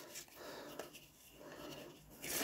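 Faint rustle of playing cards being spread and fanned out between the hands, in two short soft stretches.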